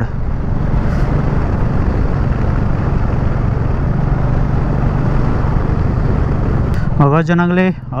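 Royal Enfield Meteor 350's single-cylinder engine running steadily under way, heard from the bike with a steady rush of wind and road noise over a low, even hum. A voice starts near the end.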